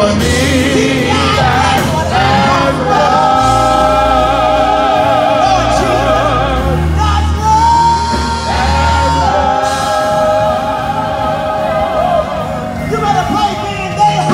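Gospel worship team singing, several voices with vibrato over held bass notes from the accompaniment, with one long high note about halfway through.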